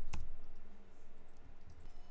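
A sharp click of computer input at the very start, with a dull low knock under it, followed by a few faint clicks.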